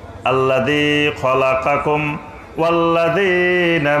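A man's voice chanting in long, drawn-out melodic phrases, each note held steady. There are about three phrases with short breaks between them, in the sung, intoned delivery a Bangla waz preacher uses for recited passages.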